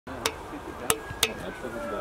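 Distant voices and open-air background on a sports field, broken by three sharp clicks in the first second and a half.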